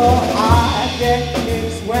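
Live swing jazz: a sung vocal line over a combo of piano, upright bass and drums.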